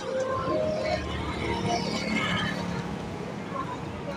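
Busy street ambience: a steady rumble of traffic with scattered snatches of people talking.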